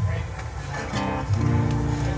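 Acoustic guitar strummed about a second in, its chord then held ringing steadily, over a low rumble.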